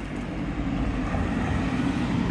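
A car driving past close by, its engine and tyre noise growing louder as it approaches.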